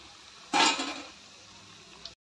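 Onion pakodis deep-frying in hot oil in a kadai, a steady sizzle, with one loud metal clatter of a spoon against the pan about half a second in as the fritters are turned.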